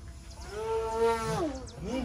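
Radio-control aerobatic model airplane's motor, heard as a buzzing note about a second long that rises in pitch, holds and then falls away as the plane passes and climbs.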